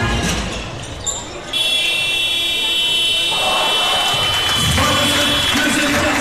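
Arena buzzer sounding a steady, high-pitched tone for about four seconds, starting suddenly about a second and a half in, while play is stopped. Arena music fades just before it, and a voice speaks under it in the second half.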